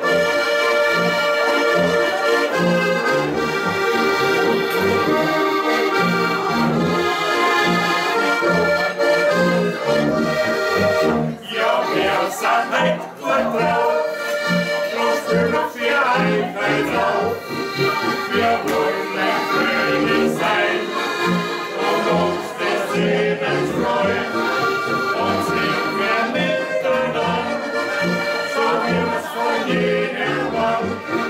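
Several diatonic button accordions (Steirische Harmonika) playing a lively Austrian folk tune together. Under them a tuba keeps an even oom-pah bass beat.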